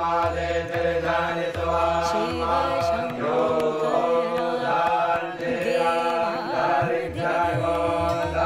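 Devotional Hindu mantra chanted to a melody over musical backing with a steady low bass pulse.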